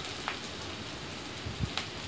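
Chopped onions frying in oil in a kadai, a steady sizzle, with a couple of faint clicks.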